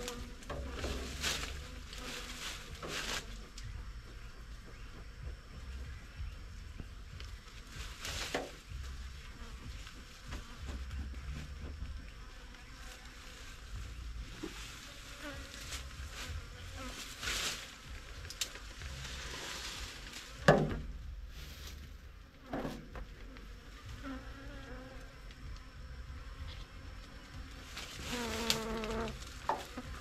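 Honeybees buzzing around an opened hive, with scattered knocks and scrapes from the hive parts being handled. A sharp knock about two-thirds of the way through is the loudest sound.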